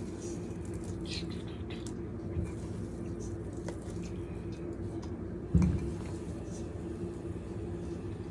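Faint soft handling noises as shredded cooked chicken is dropped by hand from a pan into a pot, with one dull thump about five and a half seconds in. A steady low hum runs underneath.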